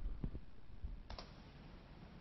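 Quiet room tone with a few faint clicks, a sharper single click about a second in.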